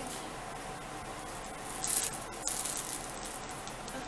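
Steady background hiss, with one short, soft rush of hissing noise about halfway through.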